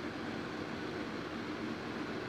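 Steady background hiss of room tone, with no distinct sound event.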